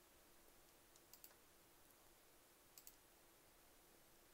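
Near silence: faint room tone with a steady low hum, broken by two quick double clicks, one about a second in and one near three seconds.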